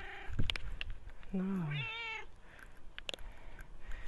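A domestic cat meows once, about two seconds in, while waiting to be fed. A few sharp clicks and knocks come about half a second in and again near three seconds.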